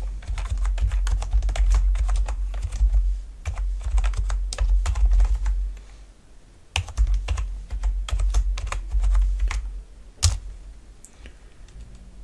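Typing on a computer keyboard in quick runs of key clicks, with a short pause about six seconds in. A single louder key press a little after ten seconds is the Enter key sending the command.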